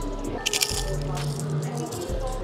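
Biting into and chewing a crunchy corn tortilla nacho chip loaded with cheese and jerk chicken, with a short burst of crunching about half a second in and softer chewing after, over background music.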